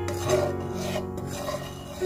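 Metal spatula scraping in short repeated strokes across a nonstick wok, stirring curry powder into oil, over background music.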